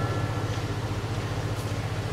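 A steady low hum with a light hiss above it, running evenly with no speech over it.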